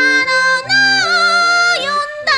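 Japanese pop song: a high, wavering lead melody with long held notes, gliding down near the end, over a stepping bass line.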